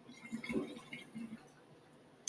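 Faint, brief gurgling and handling noises from a glass water bong as it is lifted to the mouth, dying away after about a second and a half.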